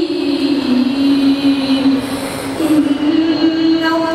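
A young man's voice reciting the Quran in a slow melodic chant through a headset microphone, drawing out long held notes. The pitch sinks lower in the first half and steps back up about three quarters of the way through.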